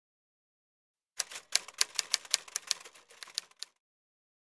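Typewriter keystrokes as a sound effect: about a dozen sharp, irregular clacks, roughly four or five a second. They begin about a second in and stop shortly before a text title appears.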